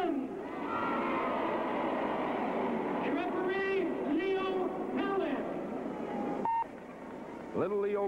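Arena crowd cheering and applauding, with a man's loud voice calling out over it a few seconds in. The crowd noise cuts off suddenly a little past six seconds, with a brief tone at the cut.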